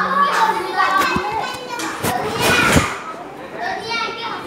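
Several children's voices chattering and calling out over one another, with a louder shout about two and a half seconds in.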